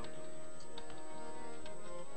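Harmonium holding steady sustained chords, with light, sharp tabla strokes over it, in an instrumental passage of Sikh kirtan.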